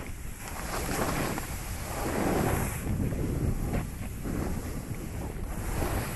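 Wind rushing over the microphone together with a snowboard sliding and scraping over snow, a noisy rush that swells and fades every second or two.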